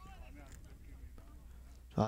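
Faint on-field sound of a football match: distant players' voices calling out over a low, steady rumble.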